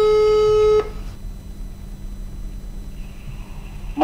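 Telephone ringback tone played through a smartphone's loudspeaker: one steady tone about a second long at the start, the ringing signal of an outgoing call not yet answered.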